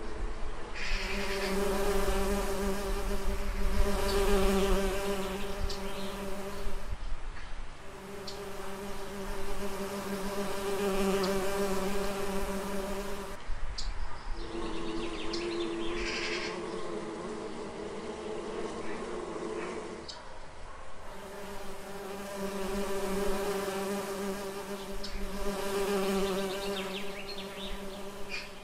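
Bees buzzing close by: a steady, pitched hum that comes in four stretches of about six seconds, broken by short gaps.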